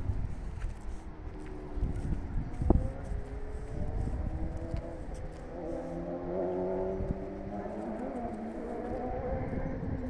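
A motor vehicle's engine running, its pitch wavering slowly up and down and growing stronger from about the middle, over a low rumble.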